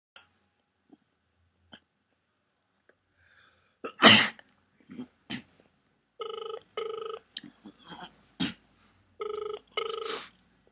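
Telephone ringback tone in a double-ring cadence: two pairs of short, steady rings about three seconds apart, starting about six seconds in. A loud cough comes about four seconds in.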